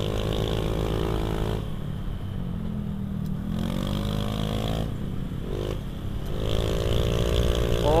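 Small single-cylinder Honda Beat Street scooter engine running under way on a hill road. Its pitch rises with the throttle about halfway through and again toward the end, over a steady rumble and wind hiss.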